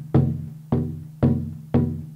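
Nepalese dhol, a wooden double-headed barrel drum with skin heads, beaten in a steady rhythm: four even strokes about two a second, each a sharp hit that rings on with a low pitched tone and fades.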